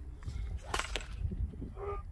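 Outdoor rumble of wind on the microphone, with two sharp clicks about three-quarters of a second and a second in. Near the end comes a brief pitched call, like a short moo or a voice.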